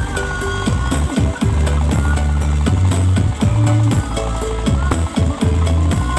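Loud music with a heavy bass line and a steady ticking beat, played through a large stacked loudspeaker sound-system rig.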